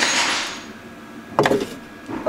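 A wooden wall board scraping against the wall as it is held in place, then a single light knock about one and a half seconds in.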